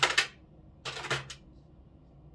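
Small plastic carabiner-style tape measure being handled and set down: a sharp clatter at the start, then a few lighter clicks about a second in.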